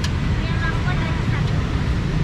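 Steady low rumble of street traffic, opening with a sharp click.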